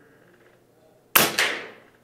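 A single shot from an Air Venturi Avenge-X .25-calibre regulated PCP air rifle, a sharp crack about a second in that trails off over about half a second.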